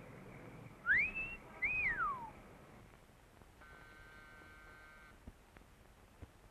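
A two-note wolf whistle: the first note rises and holds, the second rises and then falls away. A couple of seconds later, a steady electric door buzzer sounds for about a second and a half.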